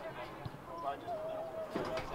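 A soccer ball kicked on the field: a dull thud about half a second in, and a second knock near the end. Under it are players' and spectators' voices, with one long held shout.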